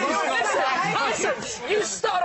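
Several people talking over one another at once, with laughter among them.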